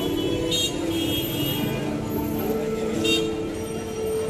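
Street traffic noise with vehicle horns held in long steady tones that shift in pitch, and short high rings about half a second in and again near the end.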